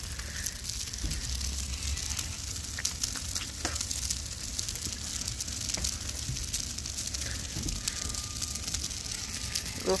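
A burning pile of dry leaves crackling and hissing steadily, with a dense scatter of small sharp pops.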